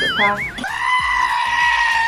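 Sheep giving one long, loud, scream-like bleat starting about half a second in, just after a brief warbling tone.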